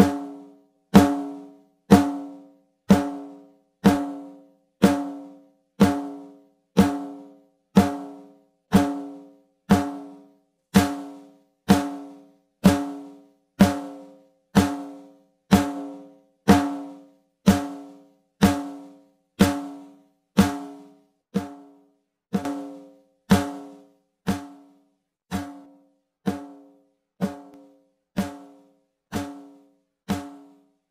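A recorded snare drum hit looped about once a second, played back through a Warm Audio WA273-EQ preamp and equaliser as its knobs are turned. Each hit rings with a pitched tone that dies away before the next, and the hits get quieter in the last third.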